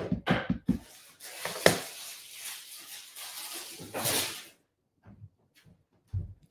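A few light knocks at first, then painter's tape pulled off the roll in a rasping strip for about three seconds, ending in a brief louder tear.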